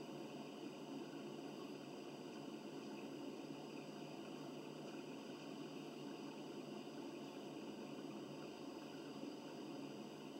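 Steady, faint hiss and hum of room tone, with no distinct events.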